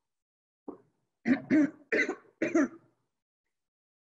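A woman coughing: one small cough, then a run of four hard coughs in quick succession about a second in.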